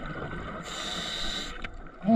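A scuba diver breathing through a regulator underwater: the exhale bubbles out as a low rumble, then an inhale hisses through the regulator for just under a second, from about two-thirds of a second in.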